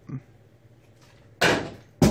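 A plastic water bottle thrown in a bottle-flip trick lands with one sharp knock about a second and a half in, ringing out briefly; another knock follows right at the end.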